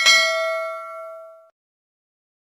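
Notification-bell sound effect of a subscribe-button animation: a single bright ding that rings for about a second and a half and then cuts off.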